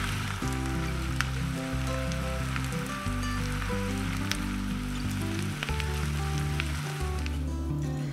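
Butter sizzling gently in a nonstick skillet under layered potato slices, with a few light clicks as slices are laid in; the sizzle fades near the end. Background music with steady low notes plays underneath.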